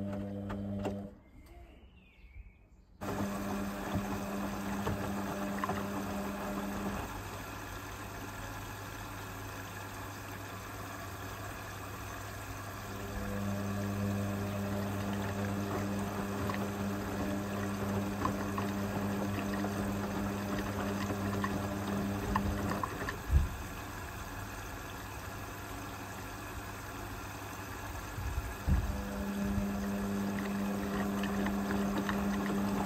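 Indesit IWB front-loading washing machine in its wash phase, its motor humming as the drum tumbles wet laundry with water sloshing. The drum runs in spells of several seconds, goes quieter between them and starts again, with a knock when it stops about two-thirds through and another as it restarts near the end. The sound drops to near quiet for about two seconds shortly after the start.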